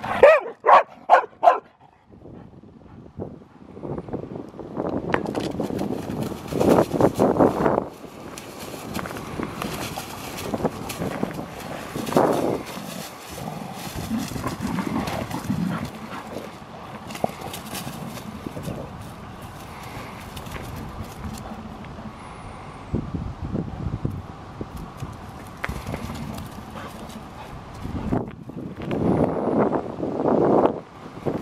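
Field-line Labrador retriever barking about four times in quick succession, loud and sharp. Then a long stretch of scuffling play noise as two Labradors wrestle.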